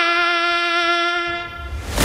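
A beatboxer imitating a saxophone with his voice into a microphone: one long held note with a bright, reedy stack of overtones, fading away about a second and a half in.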